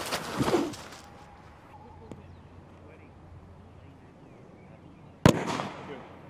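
Fragmentation hand grenade detonating downrange about five seconds in: a single sharp blast that trails off over about a second.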